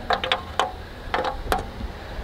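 Several light clicks and taps of a hard plastic RV roof vent cover being handled and tapped with a screwdriver, a handful in quick succession, over a low steady rumble.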